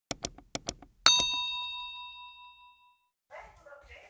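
Subscribe-animation sound effect: four mouse clicks in two quick pairs, then a single bell ding that rings out and fades over about a second and a half.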